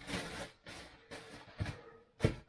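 Thin plastic bread bag crinkling and rustling as it is handled, loudest in the first half second, with a short click shortly before the end.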